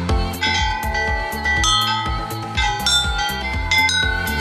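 Background pop music in a passage without the beat: long held high, bell-like tones over a thinner low end.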